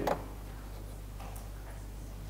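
A few faint clicks from a laptop as the projected document is scrolled, over a steady low electrical hum of the room.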